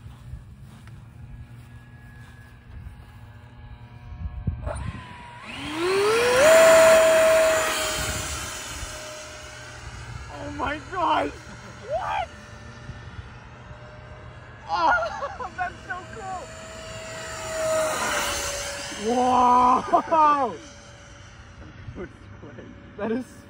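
64 mm electric ducted fan in a foam RC F-117 spooling up with a rising whine about five seconds in as the plane is launched, then holding a steady high whine with a rush of air. The whine swells again near the end as the plane passes.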